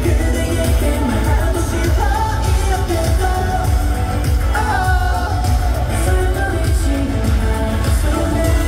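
Live pop concert: a male singer sings into a microphone over a pop backing track with heavy bass, played loud through an arena sound system and heard from within the audience.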